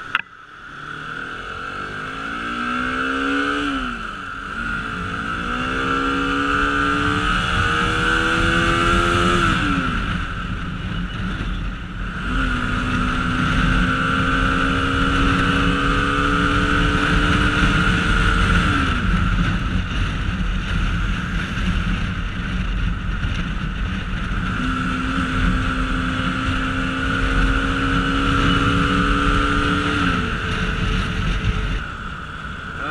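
Bajaj Pulsar RS200's single-cylinder engine pulling through the gears under a steady rush of wind. Its note climbs and drops back at upshifts about four and nine seconds in, then holds a slowly rising note at speed. It falls away when the throttle is eased about nineteen seconds in and climbs again a few seconds before the end. A sharp click comes at the very start.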